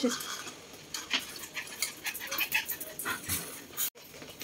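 Small chorkie dog moving about excitedly on a tile floor: a scatter of light clicks and taps, with a few faint whimpers.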